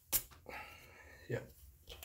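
A single light knock just after the start, then faint handling noise.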